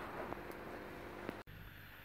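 Faint crackle of a small wood and cardboard fire burning in a metal bin, a few light pops over a low hiss. It cuts off abruptly about one and a half seconds in, leaving a fainter steady hiss.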